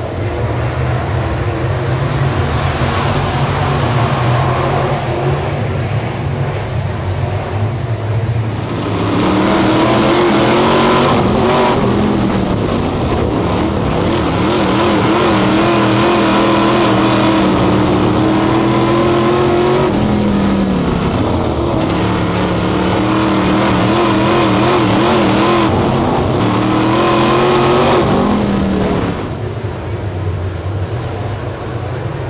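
Dirt late model V8 race cars running around a dirt oval, first as the whole field heard together from trackside. About nine seconds in, it becomes one car's engine heard from inside its cockpit, revving up along the straights and dropping off into the corners, lap after lap. Near the end it returns to the field heard from trackside.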